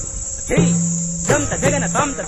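South Indian classical dance music: a voice reciting rhythmic dance syllables over a steady low drone, pausing briefly at the start, then a held low note, with the quick syllables resuming after about a second. A steady high hiss runs underneath.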